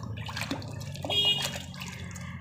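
Water splashing and sloshing in a plastic bucket as a hand scrubs a muddy plastic toy under the water. A brief high squeak comes about a second in.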